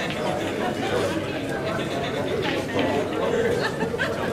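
Background chatter of many people in a large hall, with no single clear voice, and a few brief sharp clicks.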